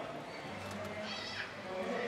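Killer whale (orca) giving a short call about a second in, a stack of high tones falling in pitch.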